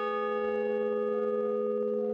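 A large hanging bell ringing on after being struck, several tones sounding together and holding steady with hardly any fading.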